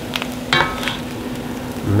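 Chanterelle mushrooms sizzling in a cast iron skillet while a wooden spatula scrapes and stirs them, with a few clicks of utensil against the pan and a short squeaky scrape about half a second in.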